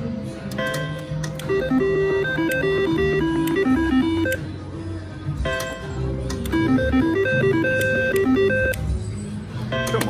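Casino slot-floor din: electronic beeping tunes from slot machines, short notes stepping up and down in quick runs, over a steady low background hum, with a few faint clicks.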